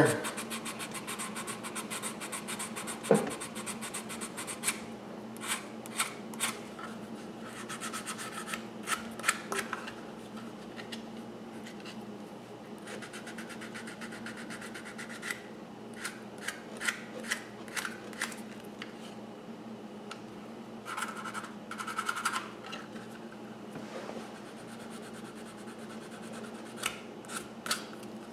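Edge of a Kydex plastic holster being sanded by hand, short scratchy rasping strokes coming in bunches with short pauses between them, done slowly to round off a sharp corner.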